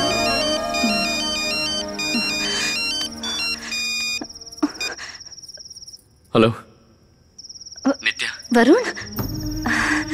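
A mobile phone ringing. First comes an electronic ringtone melody of stepped high beeps over soft background music, then a continuous high trilling ring that breaks off for about a second and resumes. A few short breaths or sighs sound over the ring.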